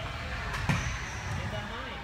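A freestyle rider's wheels striking a wooden skatepark ramp: one sharp knock about two-thirds of a second in, over steady background noise.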